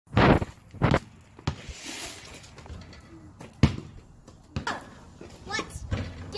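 Basketball bouncing on an asphalt driveway: several hard dribbles at uneven spacing, the first two close together near the start and another loud one past the middle.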